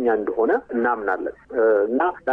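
Speech only: a radio news reader talking in Amharic, with the narrow, thin sound of a radio broadcast.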